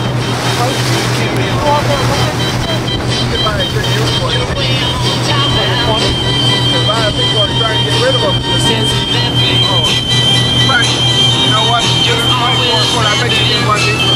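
Music with singing, from a radio, over the steady low hum of the pontoon boat's outboard motor and the rush of wind and water.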